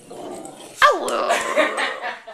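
A pet dog vocalizing, the dog "talking": a quieter rough sound at first, then about a second in a sudden loud yelp that falls in pitch and runs on into a longer, rough, wavering vocal sound.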